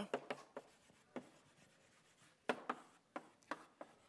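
Chalk writing on a blackboard: a string of short taps and scratches, one per stroke of the letters, with small gaps between them.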